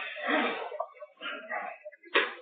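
A person clearing the throat, in two short rough bursts.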